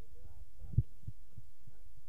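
Faint, distant voices over a steady low rumble, with one short low thud just under a second in.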